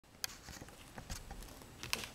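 A few short, light taps and scratches of a pen and a paper card being handled, three of them, spaced irregularly over a faint steady hiss.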